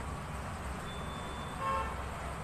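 A short horn toot, one steady pitched note lasting about half a second near the end, over a low steady hum.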